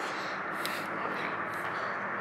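Steady low hum with a hiss over it, with one faint click about a third of the way through.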